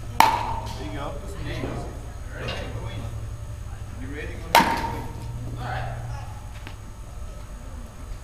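Baseball bat striking a ball twice, about four and a half seconds apart; each hit is a sharp crack with a short ring.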